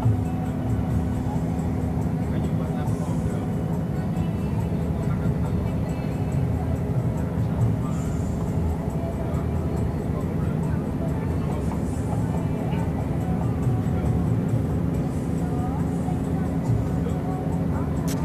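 Steady engine and road rumble inside a moving vehicle, with a constant low hum.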